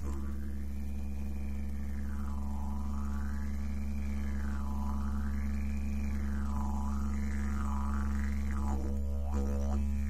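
Didgeridoo music: a steady low drone with overtones that rise and fall in slow sweeps.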